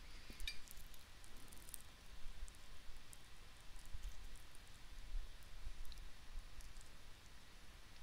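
Quiet room tone with low hum and hiss, broken by a few faint, soft clicks, mostly near the start.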